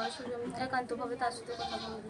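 A woman talking: speech only, with no other clear sound.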